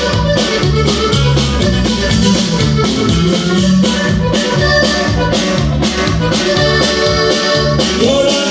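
Norteño band playing an instrumental passage: a reedy accordion lead over bass and drums, with a steady beat.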